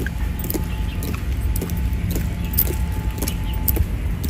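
Honor guards' boots striking stone paving in marching step, sharp clicks about twice a second, over a steady low rumble.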